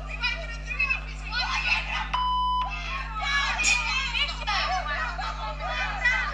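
Women shouting and screaming at each other in a heated street argument, with several high-pitched voices overlapping. About two seconds in, a steady half-second censor bleep covers a swear word.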